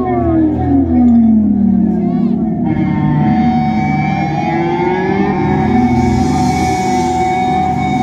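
Live band's atmospheric song intro through the concert PA: swooping, siren-like gliding tones that fall and then settle into held notes. A brighter wash comes in about three seconds in and builds.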